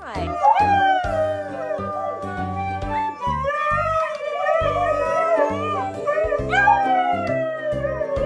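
Husky howling in long, wavering, gliding notes along with a flute, with a long falling howl near the end, over background music with a steady bass line.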